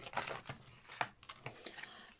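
Light handling noises: a small cardboard mascara box set down on a tabletop, with a short rustle of packaging near the start and a sharp tap about a second in.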